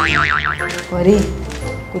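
Cartoon-style boing sound effect: a tone wobbling rapidly up and down for about half a second at the start, over background music.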